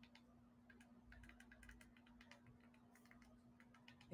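Near silence: faint, irregular light clicks over a low steady hum.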